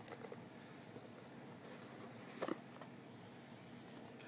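Faint handling noises of a small plastic gadget and its cardboard box: a few light clicks and rustles, with one sharper click about two and a half seconds in.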